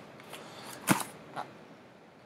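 Handling of a shrink-wrapped case of infant formula cans: soft plastic rustling with one sharp click about a second in and a smaller one shortly after.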